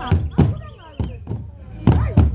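Sibhaca dance rhythm: a large drum beaten with sticks and dancers' feet stamping on the ground, heavy thuds coming in pairs about once a second. Voices sing and call between the beats.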